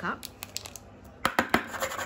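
Light, rapid clicks and knocks of a small plastic verrine cup being handled and set down on a wooden table, a few about half a second in and a quick cluster in the second half.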